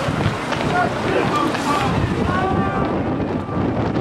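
Wind buffeting the microphone in a steady low rumble, with several short shouted calls from voices on the pitch over it.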